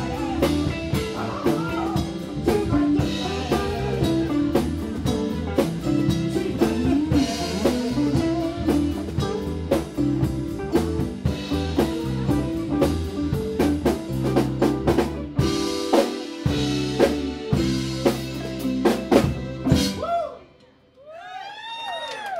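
Live band playing an instrumental passage: drum kit keeping a steady beat under electric guitar, keyboard and a stepping bass line. The band stops together about two seconds before the end.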